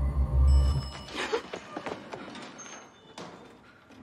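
A loud, deep rumbling drone from the film's suspense score that cuts off about a second in, followed by a scatter of knocks and thuds that fade away.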